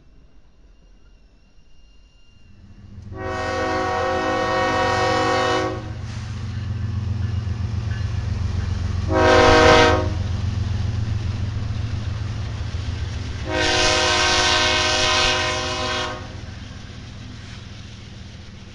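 Diesel freight locomotives led by a Kansas City Southern unit passing close, their engines rumbling as they come up, with the lead unit's multi-note air horn sounding three blasts: long, short, long, the short one the loudest. The rumble eases as the locomotives go by and the cars follow.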